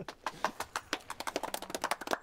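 A small group of people applauding: a few pairs of hands clapping irregularly.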